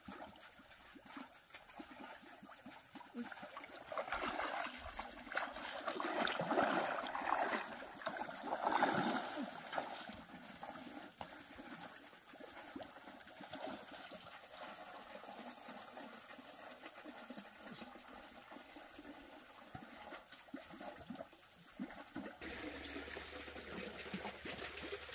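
Pond water splashing and dripping as a nylon cast net is pulled out of a muddy pond and a person wades through the water. The splashing is loudest for several seconds early in the stretch, then it goes quieter.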